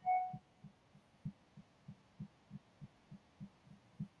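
A short bright chime at the very start, followed by a steady run of low, soft thumps, about three a second, like a quick heartbeat.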